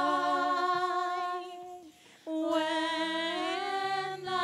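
A single voice singing a slow hymn in long held notes with vibrato. It breaks off briefly about two seconds in and then picks up again on a new note.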